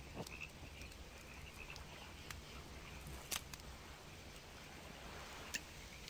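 Faint night ambience of crickets chirping steadily, with a few sharp clicks, the loudest about three seconds in.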